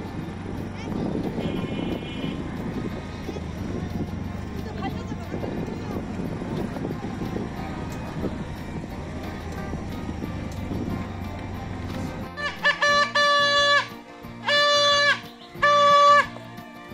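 Rumble of an auto-rickshaw riding over a rough dirt road, with a steady low hum. About twelve seconds in it gives way to loud, repeated blasts of a blown plastic toy trumpet, each held briefly at a steady pitch with short gaps between them.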